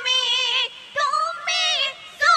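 Young female voices singing a Bengali gojol (Islamic devotional song) through microphones: a long high note with a wavering vibrato, a brief pause, then a short phrase that slides up and down in pitch.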